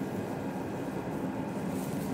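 A steady low rumbling hum with no distinct events.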